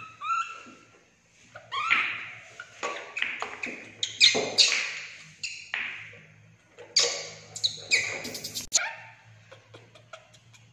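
A baby macaque giving a run of short squeaky, chirping calls that bend up and down in pitch, loudest about halfway through, with a few sharp clicks and knocks near the end.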